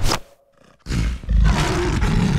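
A sharp thud right at the start, then, from about a second in, a loud drawn-out roar sound effect.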